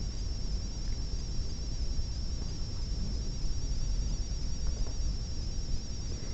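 Room tone: a low steady rumble with a thin, steady, slightly wavering high-pitched whine over it.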